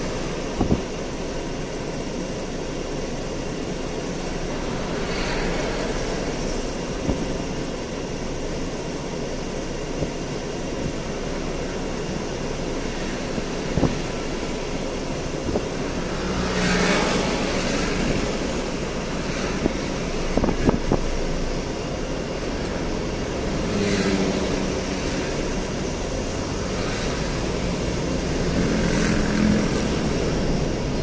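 Road traffic heard from inside a car crawling in a queue: a steady hum of engines and tyres, with other vehicles swelling louder as they pass, most strongly about halfway through. A few brief sharp clicks stand out.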